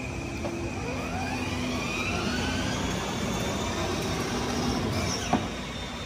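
Electric drive motors of a child's battery-powered ride-on toy McLaren whining as it drives, the pitch rising over the first few seconds as it picks up speed, over a steady rumble of the wheels on concrete. A single click sounds near the end.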